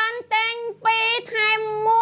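A woman's high-pitched voice in a drawn-out, sing-song delivery, with long held notes separated by short breaks.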